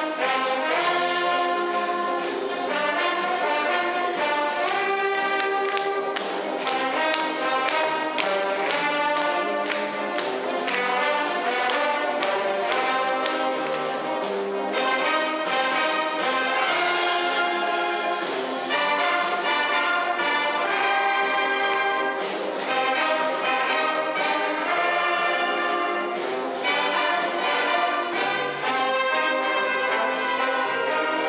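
Brass band playing, with trumpets, trombones and tuba carrying the tune and the accompaniment.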